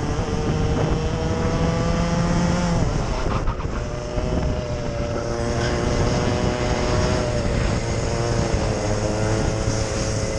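Racing kart engine heard onboard at racing speed. Its note climbs steadily, dips briefly about three seconds in, then holds high again as the kart runs on.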